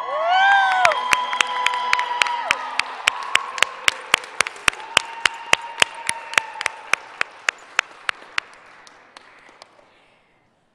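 Audience applauding and cheering in a gym, with one sharp close clap repeating about three times a second over the general applause. A whoop rises and falls in the first second, and the applause fades away toward the end.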